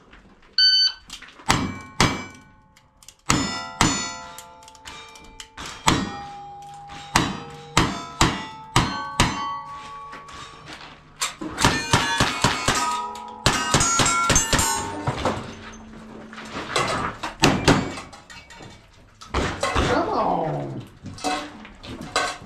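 Electronic shot-timer start beep, then a long string of rifle and handgun shots at steel targets, many hits followed by the ping and ring of struck steel; the shots come fastest in a rapid run near the middle of the string.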